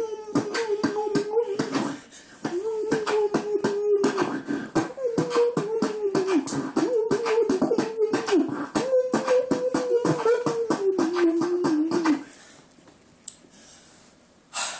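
Beatboxing: a hummed tone held at one pitch, dipping at the end of each phrase, over rapid mouth-made percussion, in about five phrases with short breaks. It stops about two seconds before the end.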